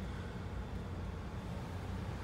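Steady low hum of background noise inside a car's cabin, even throughout with no distinct events.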